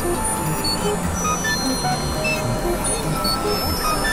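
Dense experimental electronic music, several tracks playing over one another at once: a constant wash of noise with short steady synth tones blipping at scattered pitches over a low rumble.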